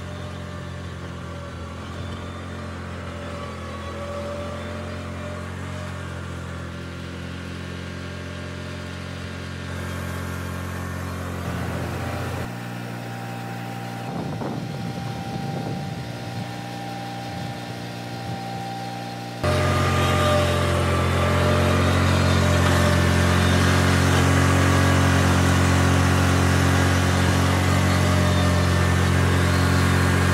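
Riding lawn mower engine running steadily under load. The sound changes abruptly twice and is louder in the last third.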